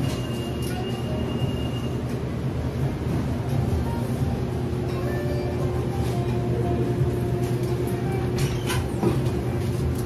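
Steady low rumble of a car's engine and tyres heard inside the cabin while driving, with quiet music underneath.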